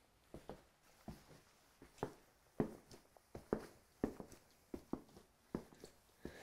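Footsteps of stiff La Sportiva Baruntse double mountaineering boots on a hardwood floor: short, uneven knocks, two or three a second.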